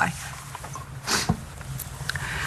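A person's short, breathy exhale about a second in, followed by a small click, over a low steady room hum; the tail of a spoken word is heard at the very start.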